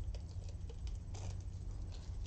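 Faint light taps and clicks of hands handling a small resin mirror frame over a wooden table, over a steady low hum.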